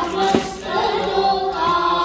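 Group of children singing a devotional song in unison through microphones, over a steady low held note.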